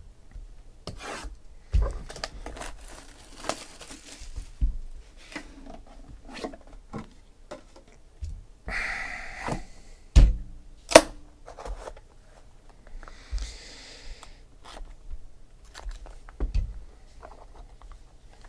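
A sealed trading card box being unwrapped and opened by hand: tearing and crinkling of its wrapper, rustling and small clicks, with two sharp knocks a little past halfway.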